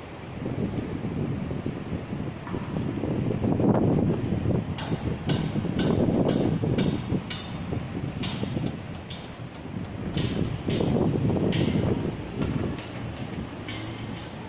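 Construction site noise: a fluctuating low rumble with wind buffeting the microphone, and a run of short sharp knocks, about one or two a second, through the middle.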